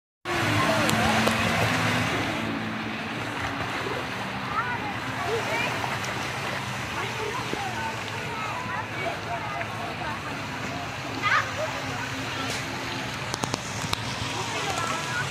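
Busy splash-pool ambience: many children's voices calling and shrieking over a steady wash of splashing, falling water, with a few louder cries near the end.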